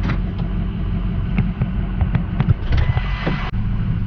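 Pickup truck engine running, heard from inside the cab as a steady low rumble. Over it come scattered clicks and knocks, and a rustling scrape about three seconds in that cuts off suddenly: the camera being handled and moved to a new spot.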